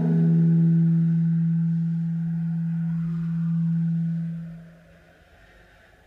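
Bass saxophone holding one long, soft low note with few overtones, which fades out about four and a half seconds in.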